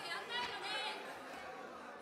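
Faint chatter of other voices in a large legislative chamber, heard in a gap in the main speaker's voice and fading out about a second in.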